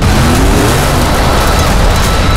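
Camouflaged Kia Tasman pickup prototype's engine revving on a loose dirt road, its pitch climbing over the first half second, over a dense rush of noise.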